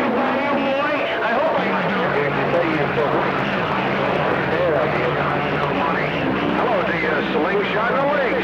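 CB radio receiver on channel 28 picking up distant skip stations: garbled, hard-to-follow voices under heavy static, with several steady low hum tones joining about two seconds in.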